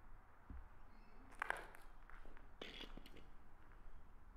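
Footsteps on a concrete floor littered with debris: a few scattered steps and scuffs, the loudest about a second and a half in.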